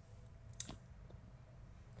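A single sharp computer mouse click a little over half a second in, with a few much fainter ticks around it.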